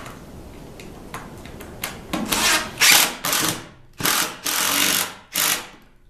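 Cordless impact driver sinking Kreg pocket-hole screws into a plywood sled fence, in about six short loud bursts that start about two seconds in and stop just before the end.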